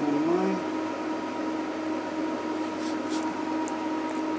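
Steady whir of the HP 8568A spectrum analyzer's cooling fans running, with a few constant pitched tones in it. A short hum of a voice comes right at the start, and a few faint clicks come about three seconds in.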